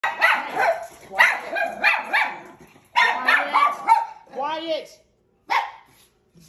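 Miniature schnauzers barking excitedly in quick runs of two or three sharp barks, followed by a rapid wavering run of higher calls about four seconds in. This is guard barking: the dogs are acting as watchdogs.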